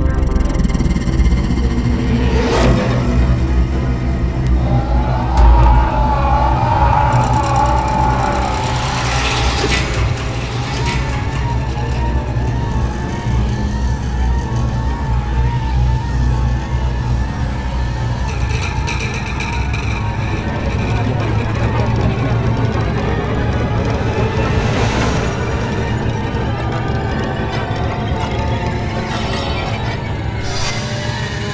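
Science-fiction film score and sound design: a deep, steady rumbling drone under electronic music, with a warbling tone and sweeping whooshes that swell up about three times.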